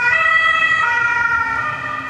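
Emergency-vehicle siren sounding steadily and loudly, its tone stepping back and forth between two pitches.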